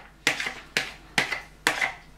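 A spoon knocking four times, about half a second apart, against the rim of a plastic bowl to shake soaked split peas out into a steamer bowl.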